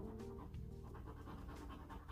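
A fingernail scraping the scratch-off coating from a paper lottery ticket in quick, rasping strokes, with faint music underneath.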